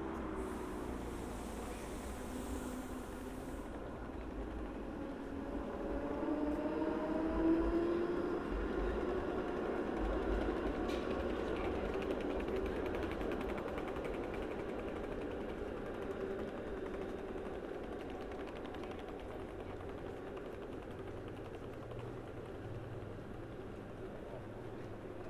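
A light-rail tram passing along the street. Its drive makes whining tones that glide up and down in pitch, loudest about seven to eight seconds in, over a low rumble that slowly fades away.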